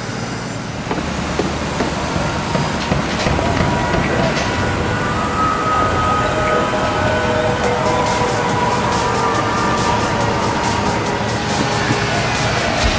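Outdoor construction-site and street traffic noise, then background music with a steady beat fading in about two-thirds of the way through.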